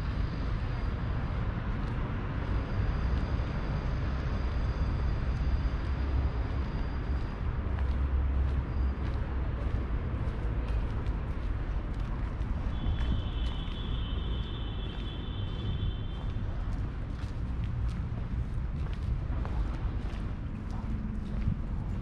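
Outdoor street ambience: a steady low rumble, with light footsteps on stone paving through the second half. Just past the middle, a high-pitched whine in several layers lasts about three seconds.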